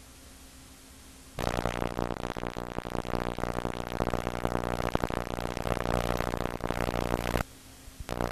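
Television audio: faint hiss, then, about a second and a half in, a loud, buzzy synthesizer-like music sound that holds for about six seconds and cuts off suddenly near the end.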